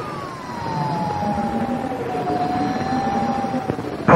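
Radio channel hiss with a whistling tone that slides down in pitch over about three seconds, then holds steady and stops just before speech resumes: the heterodyne whistle of a radio receiver between transmissions.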